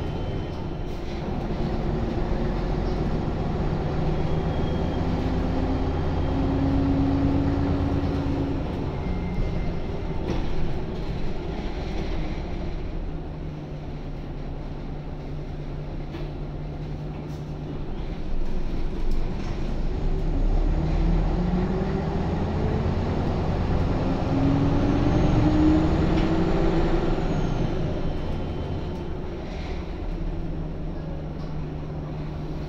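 Jelcz 120M city bus's WSK Mielec SWT 11/300/1 six-cylinder diesel engine heard from inside the passenger cabin while driving. Its pitch climbs under acceleration, eases into a quieter, steady spell in the middle, then climbs again about twenty seconds in and drops off slightly near the end.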